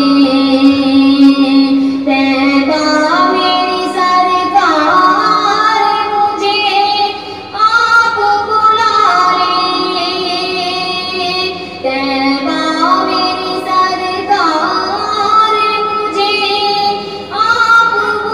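A female voice singing a naat, a devotional song in praise of the Prophet, in long, held, ornamented melodic phrases. There are short breaks between phrases about seven seconds in and near the end.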